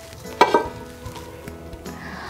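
Cookware being handled: a sharp clink of metal on metal about half a second in, ringing on afterwards, then a few lighter knocks as a lid and a granite-coated pan are lifted from a pot.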